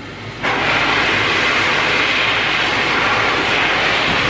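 Flying Pig Pro handheld dog dryer blowing quietly at its lowest setting, then switched up about half a second in to a much louder, steady rush of air at its middle, no-heat setting.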